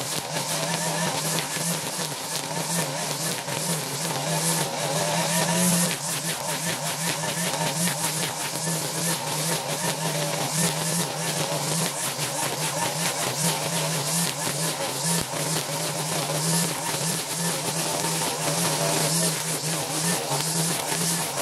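String trimmer (weed eater) engine running steadily at cutting speed, its line slashing through tall, thick grass, with the engine note wavering slightly as it works.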